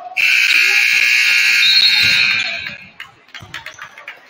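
Gym scoreboard buzzer sounding one long harsh blast of about two and a half seconds as the game clock runs out, marking the end of the first period.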